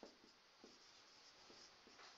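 Very faint strokes of a marker writing on a whiteboard, a few short scratches at near-silent level.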